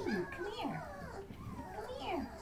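Mastiff whining and vocalising in short, wavering calls that glide up and down in pitch.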